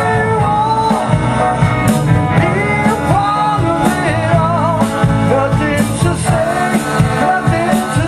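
Live rock band playing: electric guitars, bass guitar and a drum kit at full volume, with a lead line that bends and wavers in pitch about halfway through.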